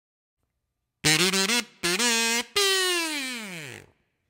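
A kazoo buzzing a short three-note intro phrase about a second in: two brief notes, then a longer, higher note that slides far down in pitch and fades out.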